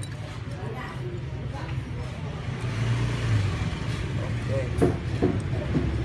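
A steady low engine hum throughout, with faint voices over it and a brief knock about five seconds in.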